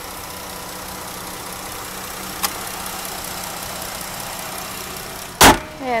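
The minivan's 3.6-litre V6 idling steadily under the open hood, with a light click about two and a half seconds in. Near the end the hood is shut with one loud bang.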